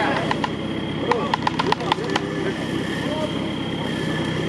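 An off-road 4x4's engine idling steadily in the background, with a quick, even run of about eight sharp clicks a little after a second in.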